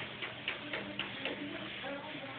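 Regular ticking, about four ticks a second, over a faint steady hum.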